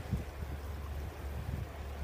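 Wind buffeting the microphone: a steady low rumble with no other clear sound.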